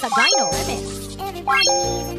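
Subscribe-reminder animation sound effects: two quick rising chime runs, one at the start and another about 1.5 s in, each ending in a held bell-like ding.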